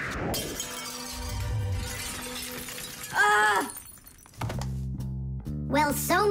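A glass mercury thermometer drops with a falling whoosh and shatters on a hard floor, a cartoon sound effect under background music. A short, loud cry follows about three seconds in.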